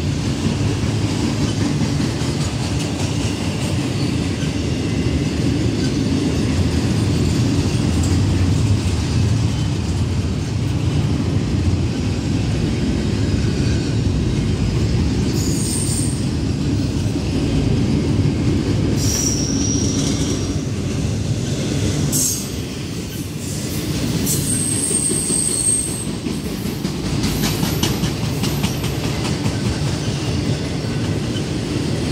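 Norfolk Southern intermodal freight train of double-stack well cars rolling past, a steady rumble of wheels on rail. Brief high-pitched wheel squeals come several times in the second half.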